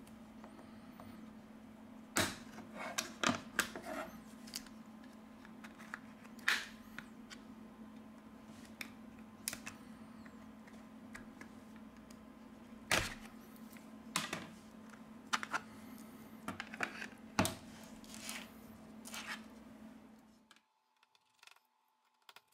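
Plastic opening pick prying the back cover off a Huawei Y5P smartphone: scattered sharp clicks and snaps as the cover's clips come loose around the edge, over a faint steady hum.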